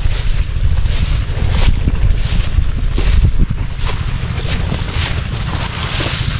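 Wind buffeting the microphone in a heavy, uneven rumble, with scattered rustles of dry grass being walked through and pushed aside.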